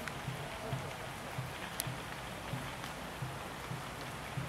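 Steady outdoor background hiss, like light rain pattering, with a few faint ticks and soft low bumps.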